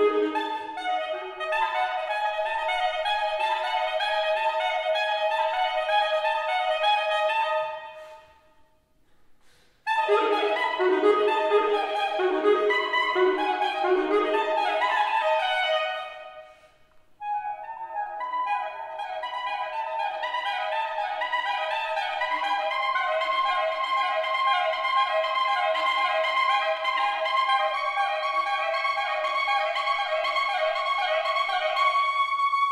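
Unaccompanied saxophone playing fast runs of short notes. The sound fades almost to silence about eight seconds in and comes back suddenly and loud two seconds later. There is one more short break about sixteen seconds in, after which rapid repeated figures run on.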